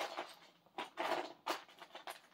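Someone rummaging for a plastic Lego brick: about six short clattering, scraping sounds in two seconds.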